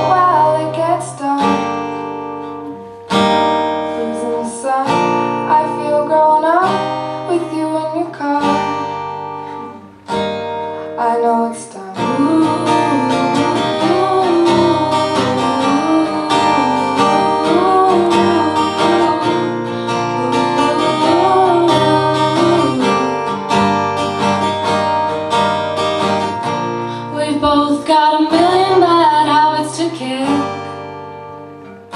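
Acoustic guitar strummed under a woman's singing voice in a live song. The playing is sparse with short breaks at first, then turns to fuller, continuous strumming about twelve seconds in.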